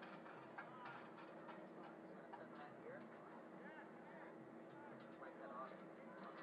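Faint outdoor ambience: distant voices with scattered light clicks and a faint steady hum.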